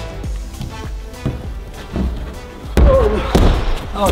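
Background music, then near the end a heavy thud as a climber drops off an indoor bouldering wall onto the gym's padded crash mat.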